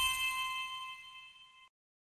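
A bright, bell-like chime from an animated logo intro rings on and fades, then cuts off abruptly about one and a half seconds in.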